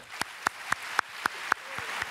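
Audience beginning to applaud at the end of a reading: a few sharp, distinct claps about four a second stand out over general applause that swells steadily.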